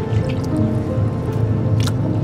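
Background music over seawater running from a hose into a plastic tub and being stirred by a hand, with a steady low hum underneath and a sharp tap near the end.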